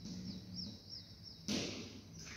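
Chalk scratching on a blackboard in a short stroke about one and a half seconds in. Before it, a small bird chirps about five times in quick succession, high and faint.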